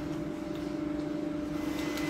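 A steady mechanical hum holding one constant low pitch.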